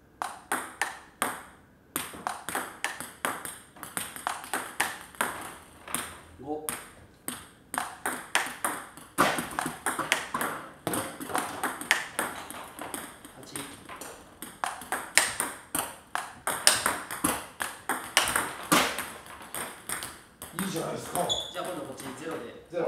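Table tennis rally: a quick, even run of sharp clicks, about four a second, as the ball strikes the paddles and the table in turn, with brief gaps where a new ball is put into play. The hits are controlled topspin returns at light to medium force rather than full-power smashes.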